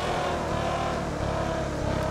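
A motor vehicle's engine running steadily close by, its pitch holding level throughout.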